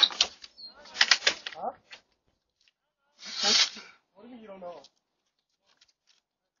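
Short bursts of indistinct voices, four of them in the first five seconds with silent gaps between, picked up through a home security camera's microphone.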